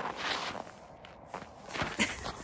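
Footsteps crunching on packed snow, a soft crunch early and another in the second half.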